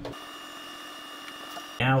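Quiet room tone with a faint steady high-pitched whine, broken near the end by a man starting to speak.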